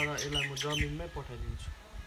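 Birds chirping in short high calls, with a man's voice holding a low, steady pitch through the first second.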